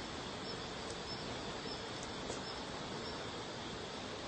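Steady outdoor background noise, a low even hiss with no distinct event.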